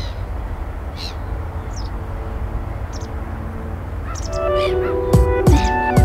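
A few short, high gull cries over a low steady rumble of city or water ambience. About four seconds in, music with sustained tones, plucked notes and drum hits fades in and becomes the loudest sound.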